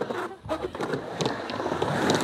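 Skateboard wheels rolling across the surface of a vert ramp, an uneven rolling noise with a few faint clicks.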